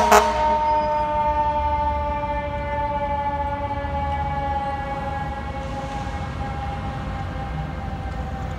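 Fire engine's siren winding down, its pitch falling slowly and steadily as the truck pulls away, with one short air-horn blast right at the start.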